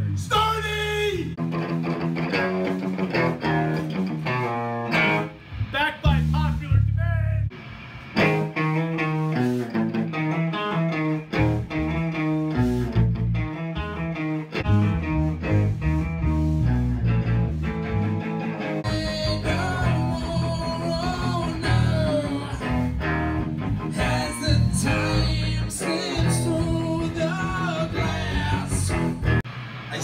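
A rock band rehearsing, led by an electric guitar played through an amplifier, picking out riffs and chords. The playing breaks off briefly about seven seconds in, then carries on.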